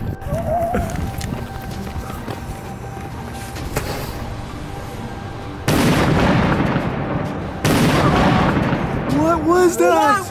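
A firework set off on pavement going off with two loud blasts about two seconds apart, each starting suddenly and carrying on for a second or two.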